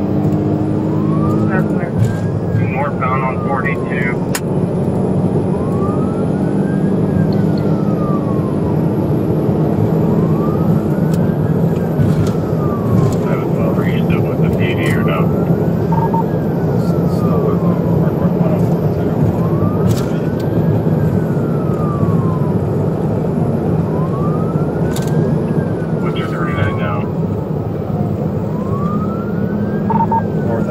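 Police cruiser siren on a slow wail, its pitch rising and falling about every four and a half seconds, heard from inside the car over loud steady road and engine noise.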